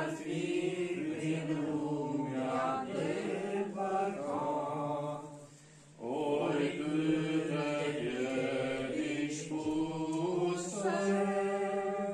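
A group of men singing a hymn together from hymnbooks, with no instruments, in slow, held notes. The singing breaks off for a short pause about five seconds in and picks up again a moment later.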